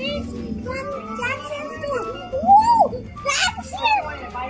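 A child's excited voice over background music, with a loud, drawn-out exclamation that rises and falls in pitch about two and a half seconds in.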